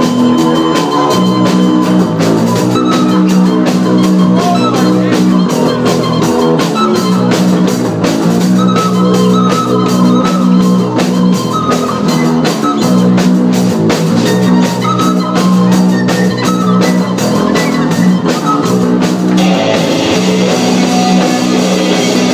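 Live rock band playing: electric guitars and a drum kit, with a short held-note melody on a recorder over the chords. About twenty seconds in, the band kicks into a fuller, brighter section with more cymbal.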